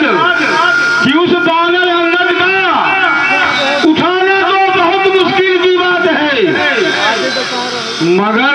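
A man's voice delivering stage lines in a drawn-out, sung manner, with long held notes that glide up and down.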